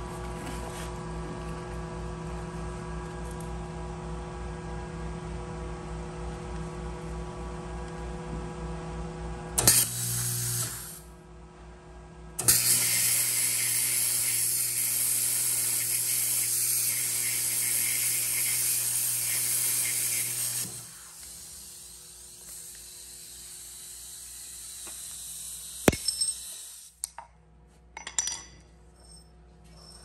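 Snap-on YA5550 plasma cutter running with a steady hum, then a short burst about ten seconds in, then the plasma arc cutting quarter-inch steel plate with a loud, steady hiss for about eight seconds before it stops. A quieter stretch follows, with a sharp click and a few short clatters of metal near the end.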